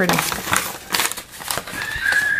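Packaging crinkling and rustling as it is handled, with irregular light clicks. A thin steady high tone starts near the end.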